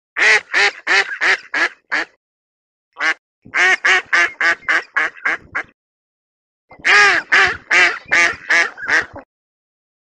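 Female mallard quacking in three runs of six to eight quacks, about three a second, each run starting loud and fading away, the hen mallard's decrescendo call.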